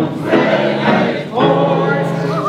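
A group of people singing a song together in Dutch, in long held notes with a brief break about a second and a half in.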